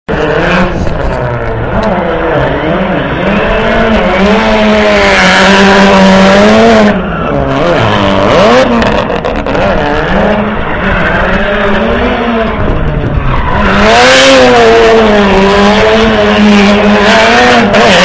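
Ford Fiesta rally car drifting, its engine revved hard with the pitch wavering up and down under the throttle, over loud squealing, skidding tires.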